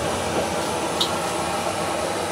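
Raw sweet potato balls frying in hot oil in a wok, a steady sizzle, with a faint click about a second in.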